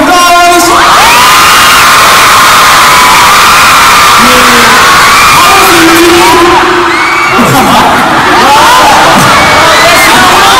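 Large audience of concert fans screaming and cheering, very loud, with many high shrieks overlapping.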